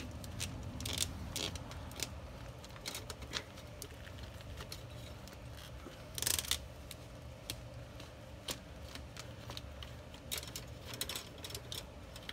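Scattered small clicks and scrapes of a liquid-tight conduit fitting being unscrewed by hand at a pool pump motor. The loudest rattle comes about six seconds in.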